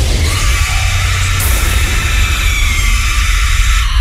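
Loud sound-effect bed of a radio show's jingle: a dense hissing swell over a deep low rumble, with a faint falling tone partway through. It cuts off abruptly at the end.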